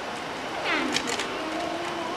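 Steady background hubbub of a large room, with a brief swooping voice falling steeply in pitch a little after half a second in, followed by a few sharp clicks of small objects being rummaged in a wooden bin.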